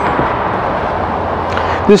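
Steady rushing background noise with a faint low hum under it, and a man's voice starting right at the end.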